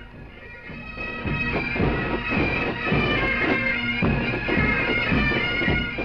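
Highland bagpipe music: a steady drone under a chanter melody, fading in over the first second.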